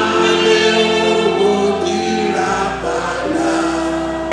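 Choir singing gospel music, with long held notes underneath the voices.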